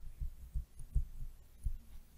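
A run of soft, low thuds at uneven spacing, several a second: a stylus knocking against a tablet screen while drawing.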